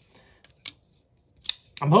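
Three sharp clicks from a Vosteed Raccoon button-lock folding knife as its blade and lock are worked. The new action is still a little stiff, with some blade stick.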